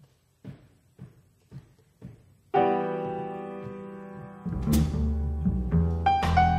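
A jazz band starting a tune: four soft count-in clicks about half a second apart, then a loud piano chord that rings and slowly fades. About two seconds later the double bass and drums come in, with a cymbal hit.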